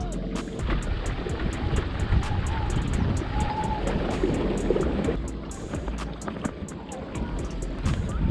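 Wind and water noise from a small boat moving across a lake, under background music with a steady beat.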